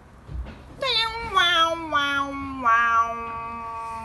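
A person's long, drawn-out wordless vocal sound. It slides down in pitch for about two seconds, then holds steady on one low note until near the end.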